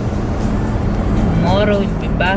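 Steady rumble of road and engine noise inside a moving car's cabin, with a short stretch of voice over music near the end.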